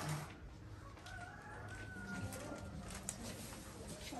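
A faint bird call: one long, slightly falling note lasting about a second and a half, heard over low room noise and soft rustling.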